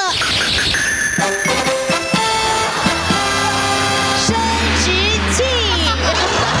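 A short, bright musical fanfare plays as a gadget is pulled out and shown off. It is a run of notes stepping upward, ending on a deep held bass note over the last couple of seconds.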